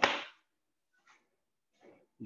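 A single short, sharp snap of a karate gi's cotton cloth as a side snap kick and elbow strike are thrown, right at the start; a couple of faint rustles follow.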